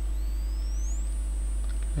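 A steady low electrical hum, with a faint high-pitched electronic whine that rises in pitch over about the first second and then holds steady as the computer starts running the simulation.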